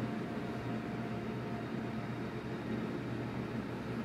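Steady hum and hiss of a running machine such as a ventilation fan, even throughout, with a faint thin tone in the first couple of seconds.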